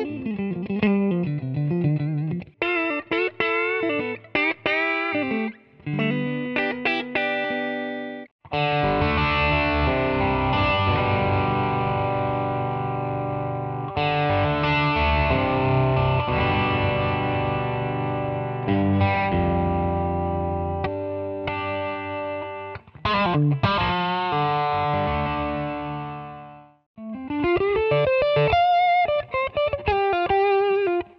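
Electric guitar played through a Roland Blues Cube amp with the Ultimate Blues Tone Capsule, its 6V6-style creamy, compressed blues tone. It opens with single-note licks and string bends, moves about eight seconds in to a long run of ringing, sustained chords, and returns to single-note lines near the end.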